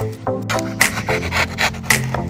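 Background music with a steady beat about once a second and short repeated notes, with a rubbing, scraping sound mixed in.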